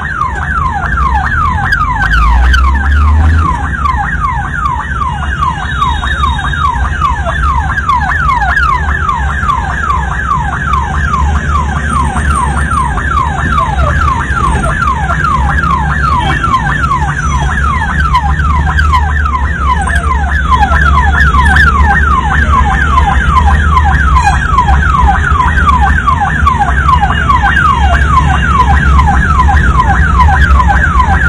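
Ambulance siren sounding without a break in a fast repeating wail, each call sweeping down in pitch, several calls a second, over a steady low rumble of road traffic. It grows louder about two-thirds of the way through.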